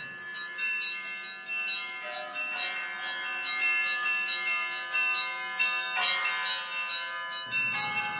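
Bells ringing, struck in quick succession about three times a second, their tones overlapping and ringing on.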